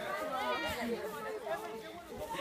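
Background chatter of a group of people talking over one another, with no single voice standing out.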